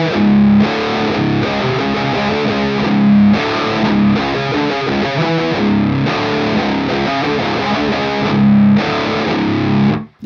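Electric guitar played through a Maestro Ranger Overdrive pedal into an amplifier: distorted rhythm riffing that growls, with chords stopped short every second or two and a few louder accented hits.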